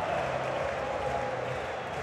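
Football stadium crowd noise, a steady wash of many voices, reacting to a fierce shot that the goalkeeper has just failed to hold.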